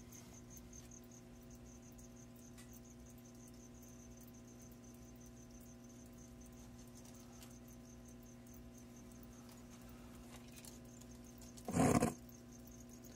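Steady low electrical hum with a faint, high chirping that repeats several times a second. A short, loud scuff comes near the end.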